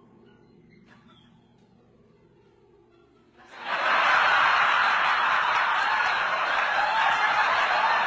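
Quiet for about three and a half seconds, then an audience suddenly breaks into loud, sustained laughter that carries on.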